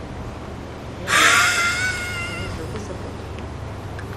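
A mobile phone ringtone going off loudly in a cinema, starting suddenly about a second in and lasting about a second and a half.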